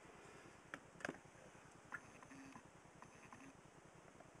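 Near silence: room tone with three faint clicks in the first two seconds.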